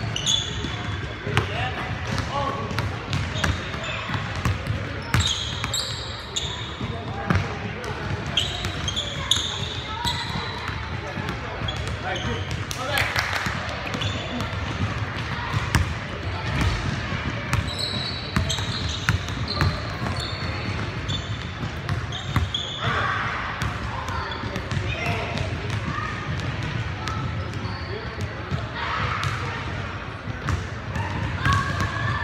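Basketball bouncing on a hardwood gym floor during play, with repeated sharp knocks and short high squeaks of sneakers, all echoing in a large hall.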